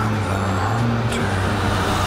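An SUV's engine running steadily under power, its pitch rising a little about a second in.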